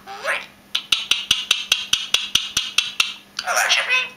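Indian ringneck parakeet making a rapid run of sharp clicks, about eight a second for a little over two seconds, between short bursts of chatter at the start and near the end.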